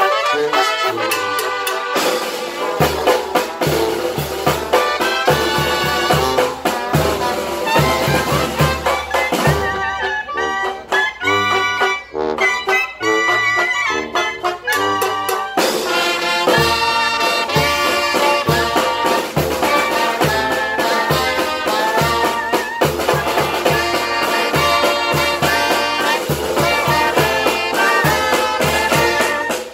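Small brass band of trombones, trumpets, clarinets, sousaphone and drum playing a tune. For a passage in the middle the bass and drum beat drop out, then come back in with the full band.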